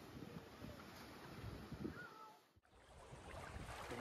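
Faint, steady wash of small bay waves on a sandy beach, with light wind on the microphone. The sound drops out briefly about two and a half seconds in, then returns closer and louder as water moving around the microphone, with wind noise.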